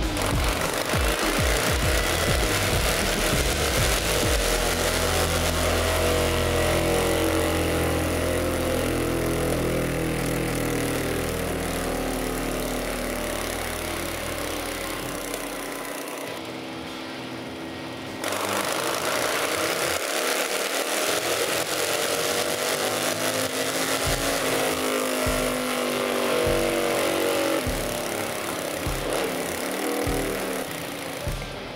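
Harley-Davidson Fat Boy V-twin engine running on a dynamometer, its revs climbing through a test run. The sound breaks off suddenly about halfway through, and a second run climbs again.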